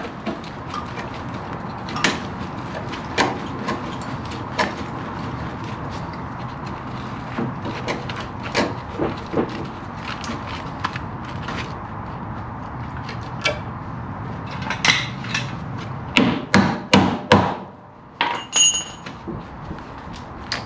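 Hand tools knocking and prying at the steel sill of a classic Mini, working loose an old panel held on by heavy previous welding. Irregular metal knocks come every second or so, then a run of hard, loud strikes near the end, followed by a brief high-pitched metallic squeal.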